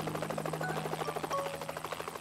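Cartoon helicopter sound effect: rapid, even rotor chop over a steady low hum, easing slightly in level.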